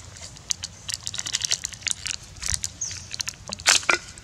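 Plastic snack wrapper crinkling and crackling in irregular bursts as a young monkey handles it, loudest near the end.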